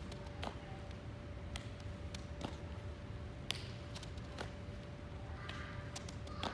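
Scattered sharp taps and clicks from a baseball fielding drill: balls rolled along artificial turf and caught in a leather glove, irregularly spaced, the loudest about three and a half seconds in. A faint steady hum runs underneath.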